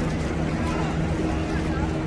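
A steady low mechanical hum, with people talking around it.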